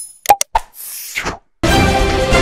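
Subscribe-button animation sound effects: two quick clicks, then a falling whoosh. About 1.6 seconds in, theme music starts.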